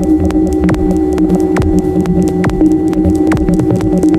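Dark techno track: a steady electronic drone hum over a pulsing low end, cut through by sharp percussive clicks, the strongest coming a little under one a second.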